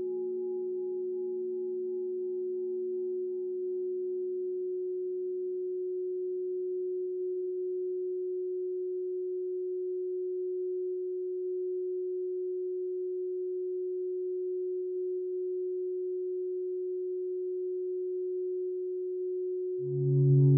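A steady, pure electronic sine tone held at one low-middle pitch, the sustained tone of a 'frequency' meditation track. Fainter tones above and below it die away over the first several seconds, leaving the single tone alone.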